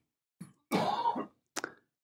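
A man clearing his throat once, close to a headset microphone, followed by a brief mouth click.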